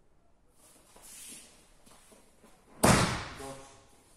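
A person thrown in an aikido elbow throw (hiji ate nage) landing in a breakfall on the tatami mats: one sudden loud slap and thud about three seconds in, dying away over about a second. Faint rustling of the uniforms comes before it.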